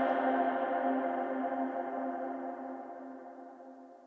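The end of a trance track: a held synthesizer chord without any beat, fading out steadily to almost nothing.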